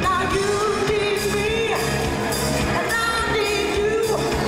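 A live soul band with a group of women singing; a long held note runs through most of it over keyboards, guitar and drums.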